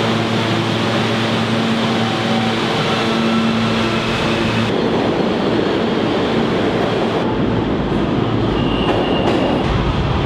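Subway train sounds: the running noise of a moving car with a steady motor hum, then, about halfway through, a louder, deeper rumble as a train pulls past a platform and away into the tunnel.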